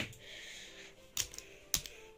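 Handling noise from a plastic toy and its accessory: a sharp click at the start, then two more light plastic clicks a little past the middle, with a soft rustle between them.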